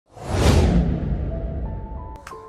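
Whoosh sound effect of a logo animation, with a deep rumble: it swells in the first half second, then slowly fades, and a faint steady tone comes in near the end.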